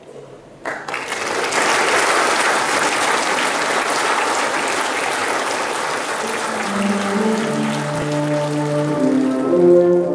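A sudden loud rush of noise starts about a second in and holds for several seconds. Then the brass band comes in with sustained chords about seven seconds in, and the noise fades beneath them.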